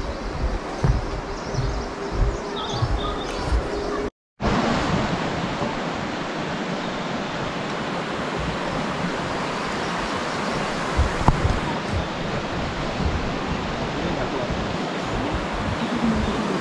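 Quiet forest sound with faint high bird calls and a steady low hum, cut off by a brief dropout about four seconds in. After it, a stream rushes with a steady, even hiss.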